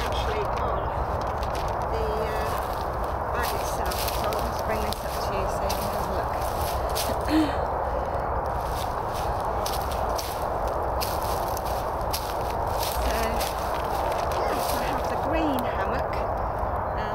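A clear plastic bag crinkling and rustling as it is handled, over a steady outdoor hiss, with a few faint bird chirps.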